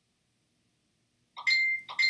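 Silence, then about a second and a half in a high, steady electronic beep-like tone starts and holds.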